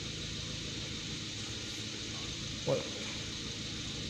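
Steady low hum of a warmed-up Nissan HR15 1.5-litre four-cylinder engine idling, heard from inside the car.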